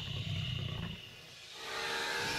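Deep, low creature growl or roar for the gargoyle, a sound-effect growl with a thin high tone over it, dying away about a second in before sound swells again near the end.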